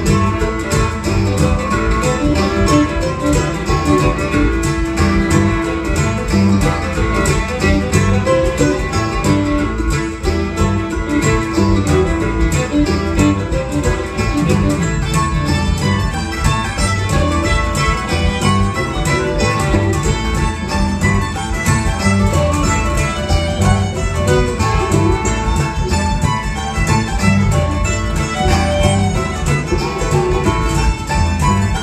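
Acoustic string band playing an instrumental passage: fiddle over strummed acoustic guitar, mandolin and upright bass, in a steady rhythm.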